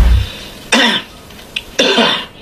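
A man coughing, with short harsh coughs about a second apart.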